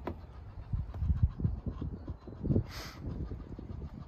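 Low, uneven rumbling and soft thumps of wind and handling noise on a handheld microphone, with a short hiss near three seconds in.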